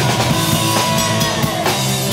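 Live hardcore punk band playing: distorted electric guitar driven by a full drum kit.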